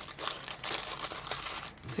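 Paper rustling and crinkling as handmade paper pieces are handled, with a few small taps.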